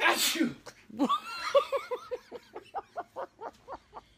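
A baby sneezing once, a sharp burst right at the start. From about a second in comes a run of short rhythmic laughs, about five a second, growing fainter toward the end.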